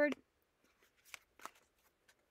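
Tarot cards being handled and drawn from the deck: a few faint, short flicks and rustles in the middle of an otherwise quiet stretch.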